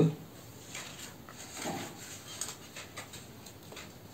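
Faint rustling and light crinkling of a square of chart paper being folded and creased by hand, with a few soft ticks. A brief faint voice-like sound comes just before halfway.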